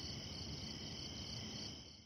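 Faint, steady chirping of crickets over a low rumble, fading out shortly before the end.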